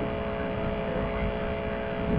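Steady electrical hum with a low background hiss.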